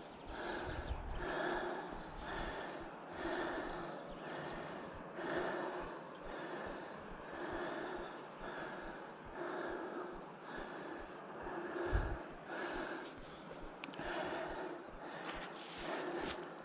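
A person breathing hard close to the microphone, out of breath, about one breath a second. A low thump on the microphone about twelve seconds in.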